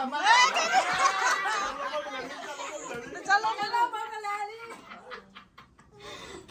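A group of people chattering and laughing excitedly, with voices overlapping. The voices die down over the last second or so.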